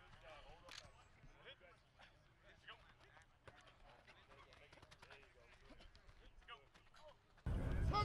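Faint, distant chatter of several people's voices with scattered light clicks. About seven and a half seconds in, the sound cuts abruptly to a much louder mix of voices over a low rumble.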